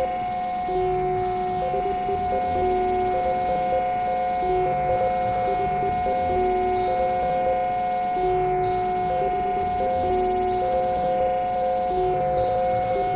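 Live electronic music from an Elektron Digitakt rig. A high drone tone is held over a lower two-note synth figure that alternates back and forth, with a steady pattern of short hi-hat-like ticks.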